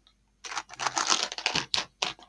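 Fingers handling knitted fabric and yarn close to the microphone: a dense run of quick rustling, scratching clicks that starts about half a second in.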